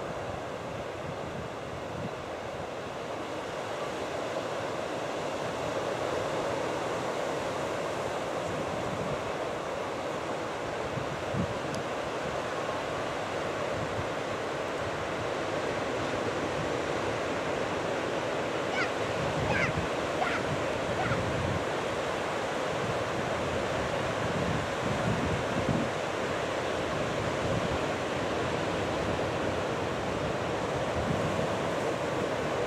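Ocean surf breaking and washing up a beach: a steady rushing noise that grows a little louder over the first few seconds.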